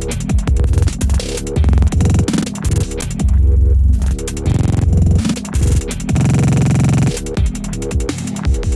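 Electronic dance track with drums and deep bass, cut up by a grain-stutter effect (the ParticleStutter Max for Live plugin) that repeats slices of the sound very rapidly. There are three longer stutters: one a little after three seconds in, one about four and a half seconds in, and one from about six seconds to seven.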